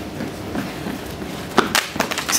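Low background room noise, broken about one and a half seconds in by a single sharp crack.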